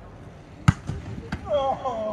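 Sharp thud of a football being kicked, about a second in, followed by two lighter knocks of the ball, then a voice calls out near the end.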